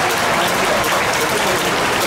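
Baseball stadium crowd applauding and cheering, a steady wash of noise.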